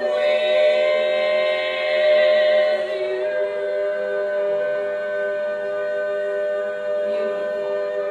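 Women's barbershop quartet singing a cappella, holding one long chord in close four-part harmony, with a slight shift in one voice about three seconds in. It is the song's closing chord.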